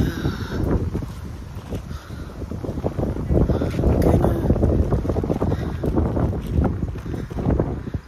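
Wind buffeting the phone's microphone: a loud, uneven low rumble in gusts, strongest in the middle.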